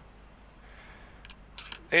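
A few faint, light metallic clicks as the cylinder of a disassembled Uberti 1849 Colt pocket revolver is handled and fitted back onto the frame. A man starts talking right at the end.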